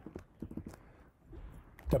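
Computer keyboard typing: a quick, uneven run of light key clicks.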